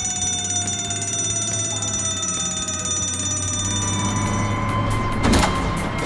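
Fire station alert alarm sounding as a steady electronic tone over a low hum, with a sharp thump about five seconds in.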